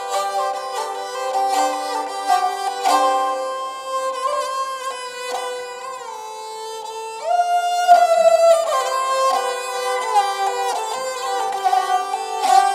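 Background film music of bowed and plucked strings playing a slow melody, with a note sliding up about seven seconds in.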